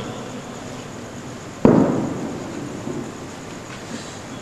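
A single sudden thump on the microphone about a second and a half in, booming through the sound system and dying away over about a second. At the start, the echo of the recitation fades out.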